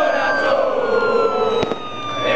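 Police escort siren wailing, one long tone that falls slowly in pitch, over the noise of a crowd. A single sharp click comes near the end.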